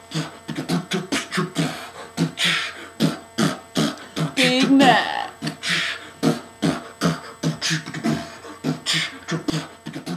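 Human beatboxing into cupped hands: a fast, steady rhythm of kick-drum pops and hissing snare sounds, with a brief wavering pitched vocal sound about halfway through.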